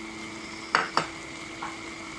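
Mud crabs and glass noodles simmering in a wok, a steady sizzling hiss. Two sharp clicks come about three-quarters of a second and one second in.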